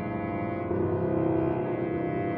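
Cello playing long, slow bowed notes, moving to a new sustained note about two-thirds of a second in.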